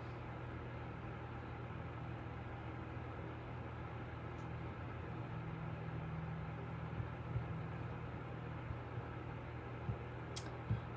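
Steady low hum under a soft hiss: room tone, with a couple of faint knocks about seven seconds in.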